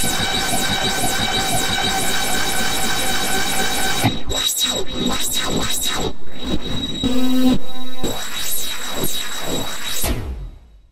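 Black MIDI played through a Casio LK-300TV keyboard soundfont: a dense wall of overlapping piano notes, hundreds of thousands a second. About four seconds in it breaks into fast sweeps up and down the keyboard, with a loud held cluster around seven seconds in, and it ends with the whole keyboard struck at once.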